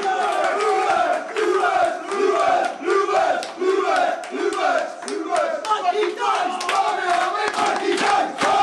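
A group of men chanting and shouting together with rhythmic hand clapping, about two beats a second.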